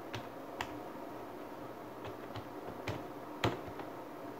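Slow, one-at-a-time typing on a computer keyboard: about seven separate key clicks spaced unevenly over the few seconds, the loudest about three and a half seconds in.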